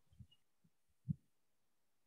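Near silence broken by two dull, low thumps, a soft one near the start and a louder one about a second in.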